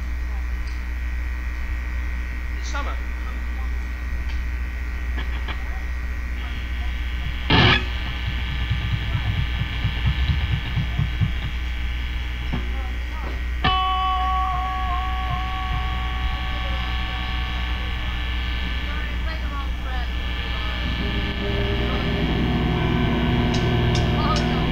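Live band sound from the soundboard, between songs: a steady amplifier hum under sustained droning tones from guitars and effects. There is a single knock about seven seconds in, and a new pair of held tones comes in around fourteen seconds. Low bass notes start near the end.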